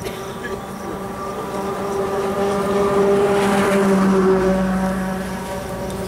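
A motor vehicle's engine running with a steady hum. It grows louder through the middle and then eases off a little.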